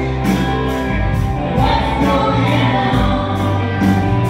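Live country band playing electric guitars, bass, keyboard and drums over a steady drum beat, with singing.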